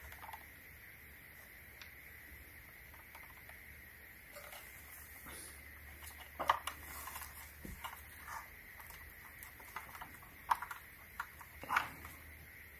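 Faint, scattered clicks and knocks of a plastic lithium-ion battery pack and vacuum housing being handled, the loudest about halfway through and twice near the end, over a faint steady hum.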